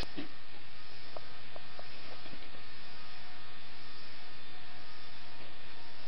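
Steady hum and hiss at an even level, with a few faint ticks in the first two seconds or so.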